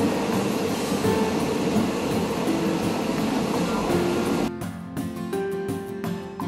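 Steady running noise of a passenger train, heard from aboard, under background music; about four and a half seconds in the train noise cuts off, leaving only the music, a plucked-string tune.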